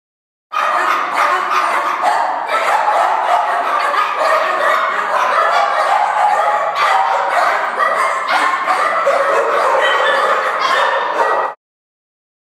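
Many dogs barking and yipping at once in shelter kennels, a dense continuous chorus that starts abruptly about half a second in and cuts off suddenly near the end.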